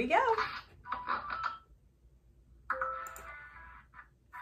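Electronic tones, like a ringtone or chime, from the laptop speaker as the online class connects, in two short runs: one about a second in and a longer one near the end.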